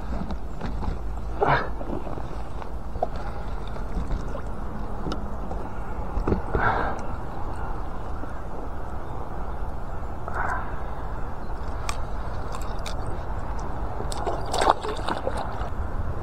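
Water splashing and sloshing in about four short bursts as a hooked pike thrashes at the surface beside a float tube and is brought into a landing net, over a steady low rumble.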